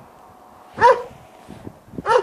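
A farm dog barks once, a short loud bark a little under a second in. The dog is not pleased with the stranger coming at it.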